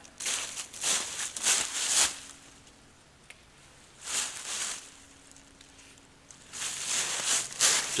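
Footsteps through dry fallen leaf litter, rustling in three spells: over the first two seconds, briefly at about four seconds, and again over the last second and a half.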